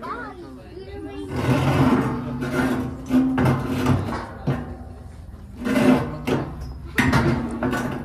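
Loud, wordless yelling voices in two long bursts, the first starting about a second in and the second near six seconds.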